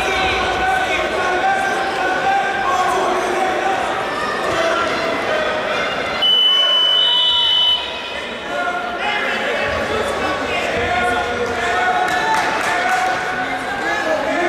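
Crowd chatter echoing in a gym, with an electronic scoreboard buzzer sounding one steady high tone for about a second and a half midway.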